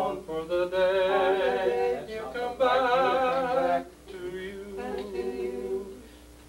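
Male barbershop quartet singing a cappella in close four-part harmony, holding chords that change every second or so with short breaks between phrases.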